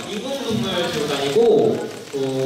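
A man's voice speaking into a handheld microphone.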